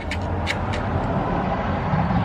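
A power drill running steadily under load, boring into the MDF bed board.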